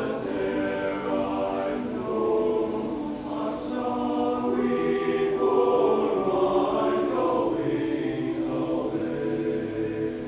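Tenor-bass choir of male voices singing in sustained, overlapping chords.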